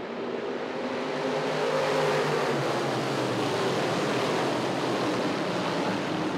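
A full field of Crate 602 Sportsman dirt modifieds running together under power on the restart, the many V8 engines blending into one dense noise that grows louder over the first two seconds and then holds steady.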